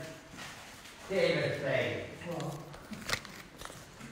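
A man's voice speaking low and briefly, followed by a couple of sharp rustling clicks as paper envelopes are handled.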